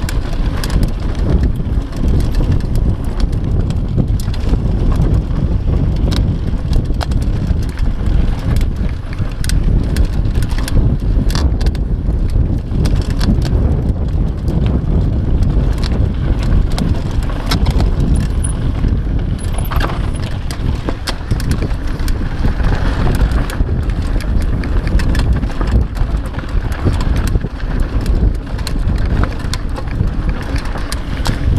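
Mountain bike ridden down a rough dirt trail: a steady low rumble of tyres on dirt, with frequent sharp rattles and clicks from the bike over bumps.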